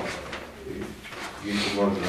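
Indistinct voices in a meeting room: a brief low murmur, then a man's voice starting up near the end, after a short click at the start.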